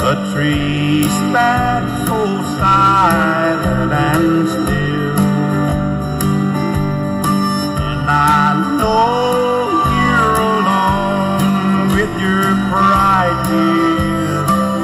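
Country music instrumental passage: guitars with gliding, bending steel-guitar lines over bass and a steady beat.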